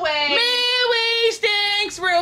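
A woman singing in a high voice without clear words: a run of steady held notes, each about half a second long, with a brief break partway through.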